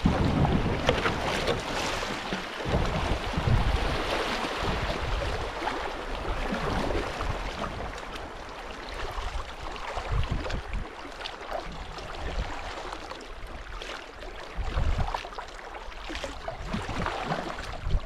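Shallow river water running over a rocky riffle around a kayak, loudest in the first several seconds and easing as the water calms. Wind gusts on the microphone come at the start, a few seconds in, and again near the end.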